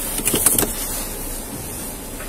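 Steady engine and cabin noise inside a patrol car, with a few brief clicks and rustles about half a second in.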